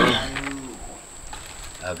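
A person's voice: a drawn-out exclamation at the start that falls in pitch and fades within about a second.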